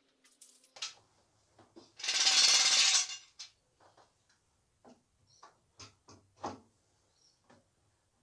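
A power tool runs in one loud burst of about a second near the middle. Scattered clicks and knocks of parts and wood being handled come before and after it.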